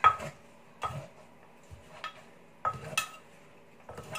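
A metal spoon and a wooden pestle knocking against a clay mortar as papaya salad is tossed and pounded. There are about five sharp clinks, unevenly spaced, each with a brief ring, and the first is the loudest.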